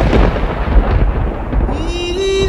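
A loud, rumbling noise with heavy bass that eases off, then music with a sustained melody line comes in near the end.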